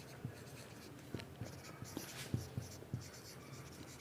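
Marker pen writing on a whiteboard: faint, irregular short strokes and taps as words are written out.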